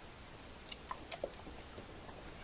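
A dog chewing a small food reward, heard as a few faint crunching ticks about a second in.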